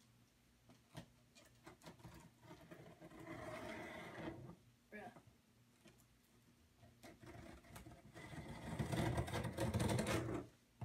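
Scissors cutting and scraping at the packing tape and cardboard of a box, with a few light clicks about a second in and two stretches of scratchy rustling, the second one longer and fuller.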